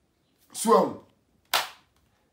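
A single sharp hand clap about one and a half seconds in, after one short spoken word.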